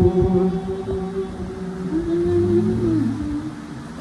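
Voices humming long drawn-out notes that slide slowly between pitches, a wordless hymn-like moan, with a lower voice joining about halfway through.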